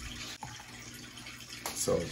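Aquarium water trickling steadily in the background, with a faint click about half a second in.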